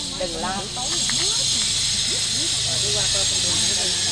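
A steady high hiss that grows a little louder about a second in, with people talking in the background.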